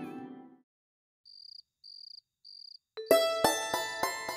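Background music fades out, then three short, high cricket chirps about half a second apart break the quiet. About three seconds in, plucked-string music starts abruptly with sharp picked notes.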